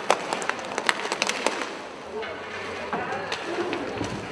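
Inline hockey play on a sport-court floor: a string of sharp clicks and clacks of sticks striking the puck and the floor. Players' voices call out over the hall's background noise.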